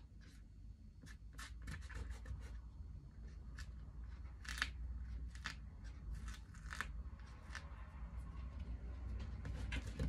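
Dried masking fluid being rubbed off watercolour paper by hand: faint, irregular scratchy rubbing strokes.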